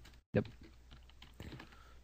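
Faint, scattered keystrokes on a computer keyboard. The audio cuts out completely for a moment near the start.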